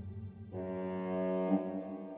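Orchestral film score made with sampled instruments, in a dark, creeping mood: a deep low note dies away, then about half a second in a low sustained chord comes in and is held.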